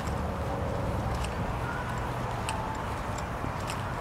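Footsteps on asphalt, slow, about one step every second and a bit, over a steady low outdoor rumble.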